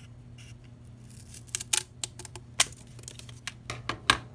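Steel scissors cutting across a strip of corrugated cardboard: a run of sharp snips and crunches starting about a second in, the loudest two in the middle.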